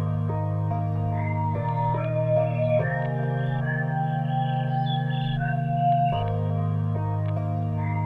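A synthesized lo-fi beat playing: sustained low synth chords that change every second or two, under a soft, flute-like synth lead melody played on a MIDI keyboard.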